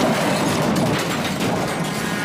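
Car crash sound effect: a dense, steady clatter of wreckage and debris that follows the impact of a car whose brakes have failed.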